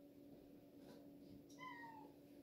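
A cat meowing once, faintly, about one and a half seconds in: a short call that falls slightly in pitch. A steady low hum runs underneath.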